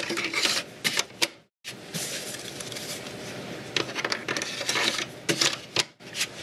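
Hard-drive carriages sliding into the bays of a Synology DiskStation DS412+ NAS and latching, a scattered series of clicks and clacks. There is a brief dead gap about one and a half seconds in.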